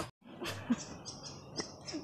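Quiet outdoor background with a series of short, high chirps from birds, and one sharp click about two-thirds of a second in.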